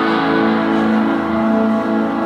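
Live band playing an instrumental passage at steady volume: guitar over held, sustained chords, with no singing.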